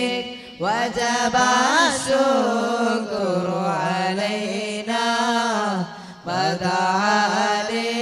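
A voice chanting a melismatic devotional salawat melody, with long held notes and ornamented pitch turns. The line breaks for a breath about half a second in and again shortly before six seconds, each time re-entering with a rising glide.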